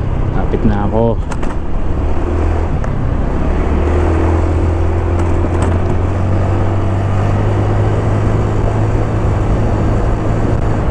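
Honda Beat scooter's small single-cylinder engine running steadily under way, with a constant low drone under wind and road noise.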